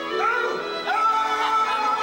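Theatre orchestra playing underscore music for a stage musical, a long high note held from about a second in.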